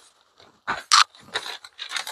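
Thin phone book paper rustling and crinkling as a page is handled, in a few short bursts starting about two-thirds of a second in, the loudest about a second in.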